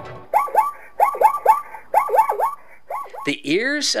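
Zebra calling: a quick run of short yelping barks, about four or five a second, each rising and then dropping in pitch. A narrator's voice starts near the end.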